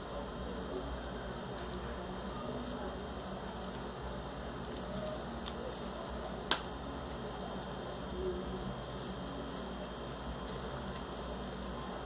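Steady background hiss with a thin, constant high whine, and a single sharp click about six and a half seconds in.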